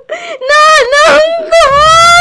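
A voice actor wailing in long, high-pitched crying cries. A low, steady music bed comes in under the wail about one and a half seconds in.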